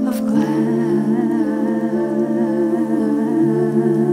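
Wordless layered female voices humming sustained harmony notes with a gentle waver, the chord shifting slightly as it goes.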